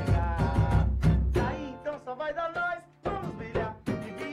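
A samba-pagode group playing live: a singer over the band's strings, bass and percussion. The bass and drums drop back around the middle, leaving the voice nearly alone, and the full band comes back in about three seconds in.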